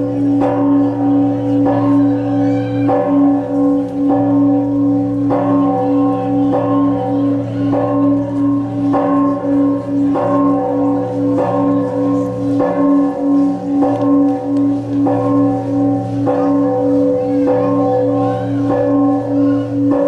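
Church bells ringing, struck about once every second or so, with their tones humming on between strokes.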